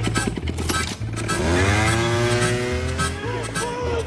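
Motor scooter engine puttering in fast pulses, then revving up in a rising whine that levels off as it pulls away, over a film score with a pulsing low bass.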